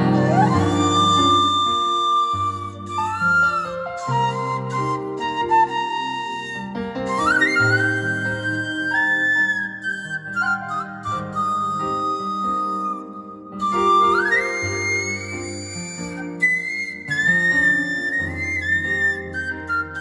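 Music played on an Onkyo 933 stereo system: a flute-like lead melody that slides up into long held notes, over a bass line and chords.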